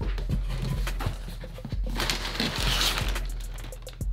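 Cardboard shipping box and kraft-paper packing being handled: scattered knocks and clicks, with a longer, louder rustling, scraping stretch about two seconds in.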